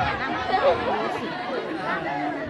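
Many voices talking at once: audience chatter, with overlapping voices and no single speaker.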